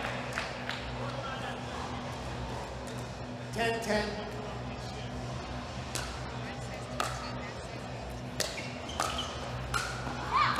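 Pickleball paddles striking a hard plastic ball in a rally: four sharp pops in the second half, about a second apart. A short call of a voice comes a little before the middle, over a low steady hum of arena background music.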